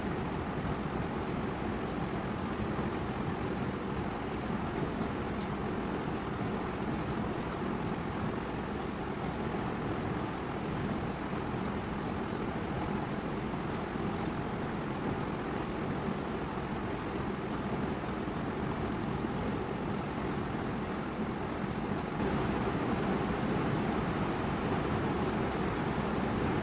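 Steady, even background noise with no distinct events, rising a little about 22 seconds in.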